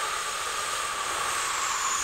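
Bambu Lab A1 mini 3D printer printing: a steady hiss with a steady mid-pitched whine over it, and a faint high tone that dips slightly near the end.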